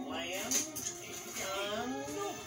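Film soundtrack playing from a television and picked up in a small room: a character's voice over a background music score.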